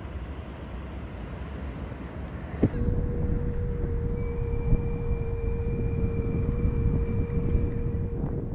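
Outdoor ambience: wind buffeting the microphone over a rumble of traffic. About three seconds in there is a knock, the noise grows louder, and a steady tone sets in and holds.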